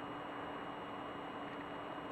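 Quiet room tone: a steady low hiss with a faint constant hum underneath and no distinct events.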